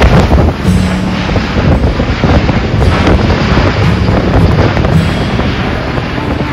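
Loud, steady noise from an Airbus A400M Atlas's four turboprop engines and propellers as it flies overhead, with wind buffeting the microphone.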